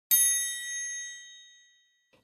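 A single bright, bell-like chime struck just after the start, ringing with several high tones that fade out over about a second and a half; it marks the turn to the next page of a read-along picture book.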